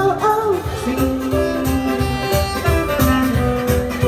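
Live pop band music: a woman's sung phrase ends about half a second in, then saxophone plays held notes over the band's backing with a steady beat.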